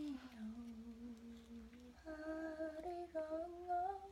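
A girl humming a tune: one long low note for about two seconds, then a few higher notes that step up and down.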